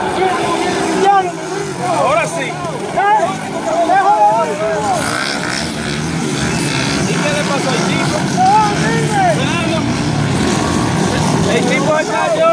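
Motocross dirt bike engines running and revving as riders pass on the dirt track, with spectators' voices calling out over them in the first few seconds and again later.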